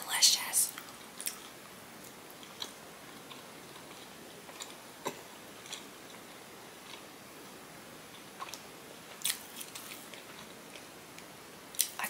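Close-miked chewing of a big bite of lemon ricotta pancake: a burst of wet mouth clicks and smacks as the bite is taken, then soft, scattered clicks of chewing with the mouth closed.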